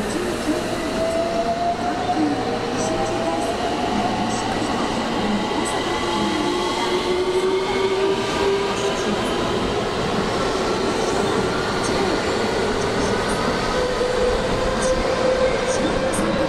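JR West 223 series electric train pulling out of the station past the platform: a steady rumble of wheels and running gear, with the electric motor whine rising in pitch several times as it picks up speed.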